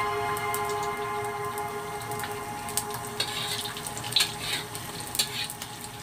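Egg frying in oil in a wok, a soft steady sizzle, with a spatula scraping and tapping the pan a few times in the second half. Faint held music tones die away underneath in the first couple of seconds.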